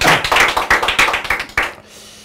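Audience applauding: a dense, irregular patter of hand claps that dies away near the end.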